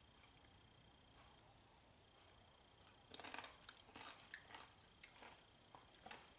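Near silence for about three seconds, then a person biting and chewing a crisp corn tortilla chip, a couple of seconds of irregular crunches.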